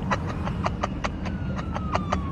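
A man's giggling laugh in quick, even pulses, about six a second, over the low rumble of a car's engine.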